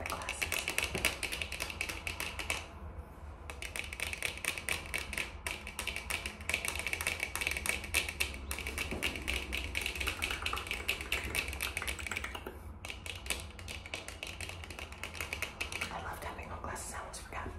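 Fast, random fingernail and finger-pad tapping, a dense run of rapid clicks that breaks off briefly about three seconds in and again just before the thirteen-second mark.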